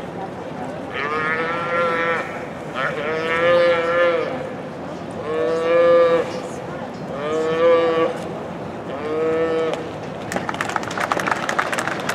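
A roped calf bawling five times in a row, each call about a second long, as it is thrown and tied down.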